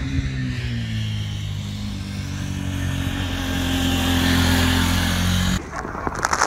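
KTM RC 390 motorcycle's single-cylinder engine running at fairly steady revs, growing gradually louder. It cuts off suddenly about five and a half seconds in.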